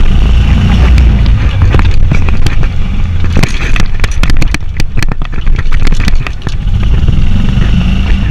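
Golf cart riding along a paved cart path with a loud low rumble, while the irons in the golf bags on the back rattle and click against each other.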